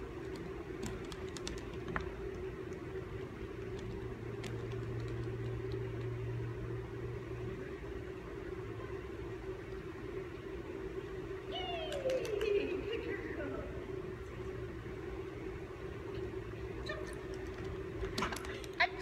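Steady room hum in a large gymnasium, with a few faint clicks in the first seconds and one short falling vocal sound about twelve seconds in.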